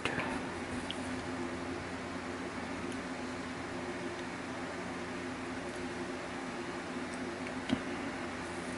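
Steady low electrical hum with room noise, several steady tones held throughout, and one faint sharp click near the end.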